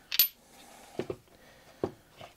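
One sharp, bright clink of a small hard object on a workbench, followed by a few duller knocks as parts are handled: two about a second in and one near the end.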